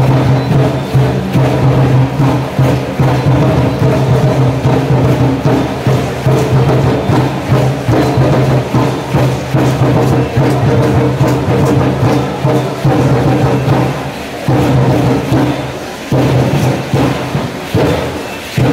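Live music for a Conchero dance: a steady drum beat with wooden clicking, and a strummed concha lute. The beat eases off briefly twice near the end.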